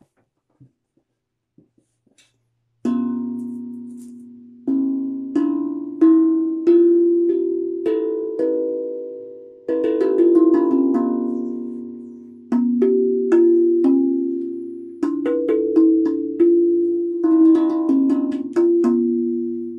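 Hybrid steel tongue drum played with the fingers: single notes struck one after another in a slow, unhurried melody, each ringing out and fading as the next sounds. A few faint handling knocks come before the first note, about three seconds in.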